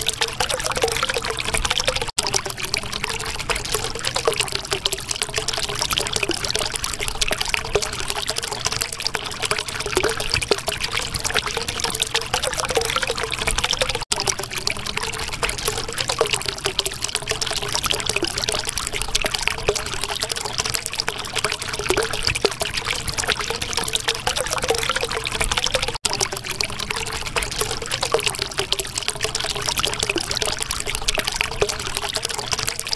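Flowing water trickling and pouring steadily, with small bubbling blips running through it. The sound drops out for an instant three times, about twelve seconds apart.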